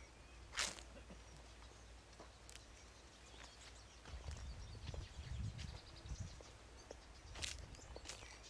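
Faint outdoor garden ambience, with a sharp click a little under a second in and another near the end, and low muffled bumps from about halfway on, like footsteps on a dirt path or handling of the camera.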